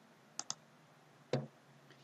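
Computer mouse clicking: two quick, sharp clicks about half a second in, then one duller short click about a second later.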